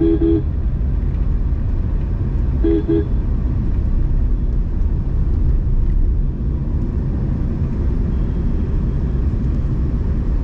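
Steady road and engine rumble from inside a moving car's cabin, with a car horn tooting briefly twice: once right at the start and again about three seconds in.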